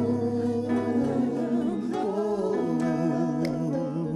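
Live gospel music: several voices hold long, slowly moving sung notes without clear words over two acoustic guitars.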